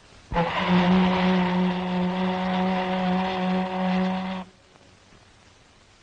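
A ship's whistle sounding one long, steady blast of about four seconds, the signal of a liner about to leave its pier.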